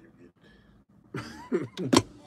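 A man's voice starting about a second in, ending in a loud cough.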